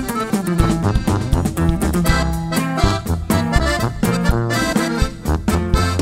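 Instrumental passage of a live Mexican regional band: accordion lead over a steady bass line and a driving rhythm.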